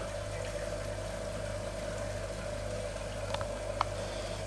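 A small continuous stripping still running steadily: a constant low hum with liquid noise as the distillate runs out, and two small ticks near the end.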